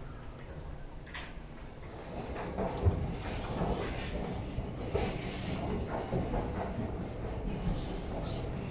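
Moving escalator: a steady low rumble with irregular clatter and knocks. It starts quieter and grows louder about two seconds in.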